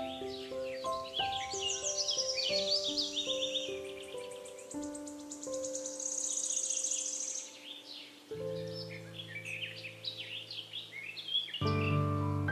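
Slow, soft piano music with wild birds chirping and trilling over it. A fast, high trill stands out about six seconds in, and deep bass notes come in about two-thirds of the way through.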